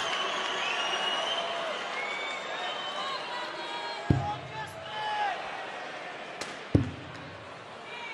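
Two darts striking a bristle dartboard with sharp thuds, about four seconds and six and a half seconds in, over steady arena crowd noise.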